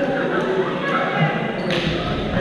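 Badminton play in a large, echoing gym: thuds and racket strikes of a doubles rally, with one sharp hit near the end, over the steady chatter of many voices.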